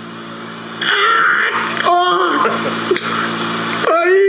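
A man's wordless vocal sounds on a prank-call recording: a breathy gasp about a second in, a short cry around two seconds and a rising wail near the end, the caller sobbing. A steady low hum runs underneath.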